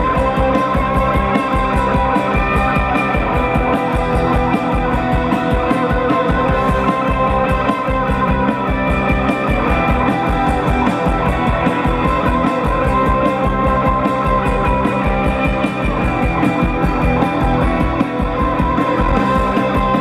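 Rock band playing live: electric guitars holding steady ringing notes over fast, driving drums, with no singing.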